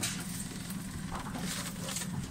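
Steady low rumble of a small boat on open water, with a few faint rustles and taps as a nylon gillnet is handled aboard.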